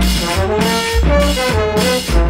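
Colombian cumbia played loud through a sonidero sound system: a horn section carries the melody in held notes over a bass that pulses about twice a second.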